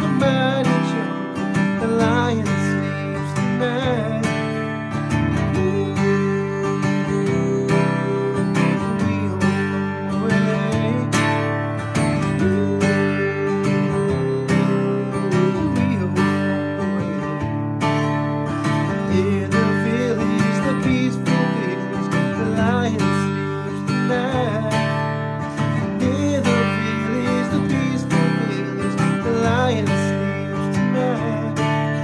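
Steel-string acoustic guitar played in a steady rhythm: a pluck of the top strings, then down-up-down-up strums, moving through G, C and D chords. A hummed melody comes in over it at times.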